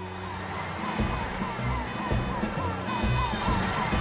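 Fire engine siren approaching, a quickly repeating falling tone, over background music with a low pulsing beat that comes in about a second in.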